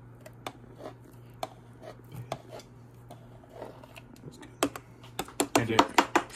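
Light, scattered clicks and taps of a plastic blender jar and plastic cups being handled while a thick smoothie is poured, growing busier near the end, over a steady low hum.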